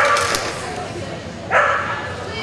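A small dog barking twice: one bark at the start and another about a second and a half in.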